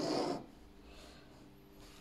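A short, breathy exhale, then faint room tone.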